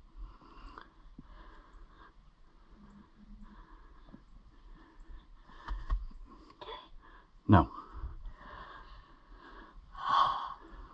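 Quiet waiting with soft breathing and small handling noises close to the microphone, a low bump about six seconds in and one short, sharp sound about seven and a half seconds in.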